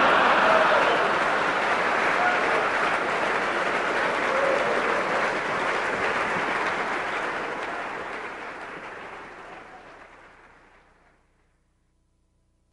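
Audience applauding after a successful mind-reading reveal, loud at once and then dying away over the last few seconds to silence.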